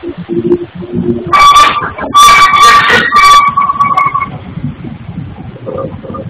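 Stone-cutting machinery at a granite tile workshop: a loud, high screech of a power tool cutting into granite, in three pushes from about a second in to about four seconds. A lower steady motor hum is heard in the first second.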